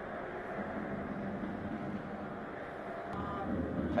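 Steady background ambience of a football match broadcast, an even hiss of stadium and pitch noise with no crowd cheering. A faint short call or shout comes about three seconds in.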